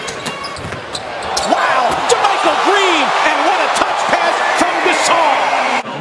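Live basketball game sound on a hardwood court: the ball dribbled in sharp bounces and sneakers squeaking, over a continuous arena crowd. The crowd gets louder about a second and a half in.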